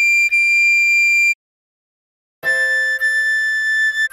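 Soprano recorder melody: a high D played twice and held, about a second of silence, then a lower A played twice and held. The notes are steady and clear.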